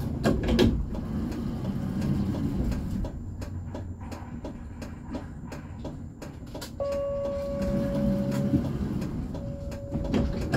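A stopped tram's low steady running hum with many scattered sharp clicks. About seven seconds in, a steady electronic tone sounds for about two seconds, then starts again near the end.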